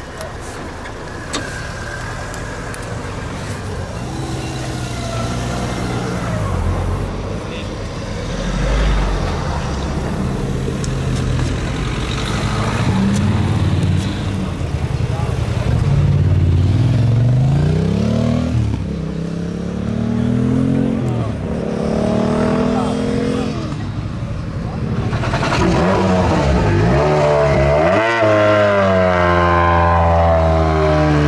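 Vehicle engines revving up and down several times, the pitch rising and falling, then running steadily near the end, with people talking.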